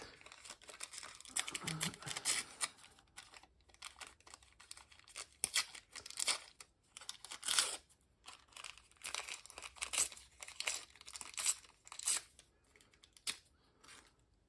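Thin deli paper, painted with acrylic bronze paint, torn by hand into small pieces and crinkled between the fingers: a dense rustle at first, then a run of short rips about every second.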